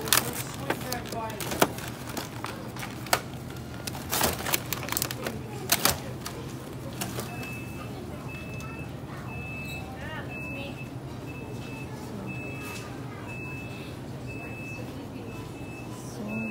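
Sharp crackles and clicks of plastic clamshell bakery packs being handled. From about halfway a short, high electronic beep repeats roughly once a second in the background.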